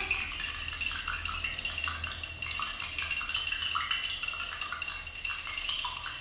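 A spoon stirring rice grains in a cup of water, clinking against the cup in quick, irregular taps.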